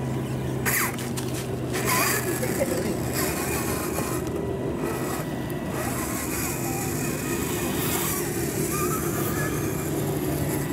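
Radio-controlled scale Land Rover Defender crawler driving slowly through loose gravel, its small electric motor and gears whining steadily and its tyres crunching on the stones.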